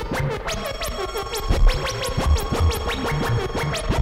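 Free-improvised electronic music: a stream of quick rising synthesizer sweeps, several a second, over a wavering mid-range tone and irregular low thuds.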